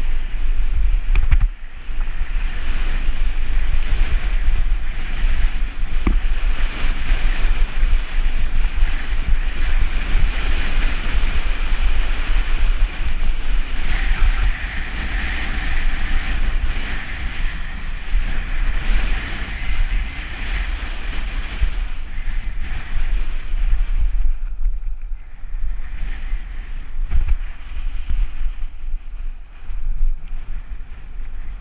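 Wind buffeting the action camera's microphone, with the crunch and rattle of mountain-bike tyres rolling fast over a gravel track. The noise eases briefly for a couple of seconds near the end.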